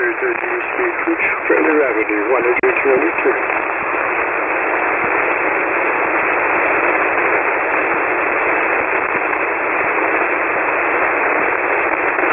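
Single-sideband receiver audio on the 40-metre band: a steady hiss of band noise, cut off below and above the voice range. A faint, weak voice sits in the noise for the first few seconds, then only the hiss is left.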